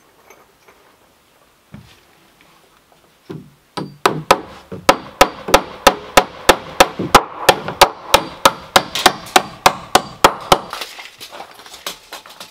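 Hammer blows on a wooden post, a fast steady run of about three strikes a second, like a nail being driven home. It starts about four seconds in and lasts about seven seconds, after a few scattered knocks.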